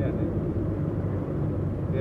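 Steady engine hum and road rumble heard from inside a moving Nissan's cabin while driving.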